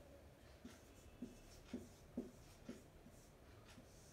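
Marker pen writing on a whiteboard: about six short, faint strokes as digits are written.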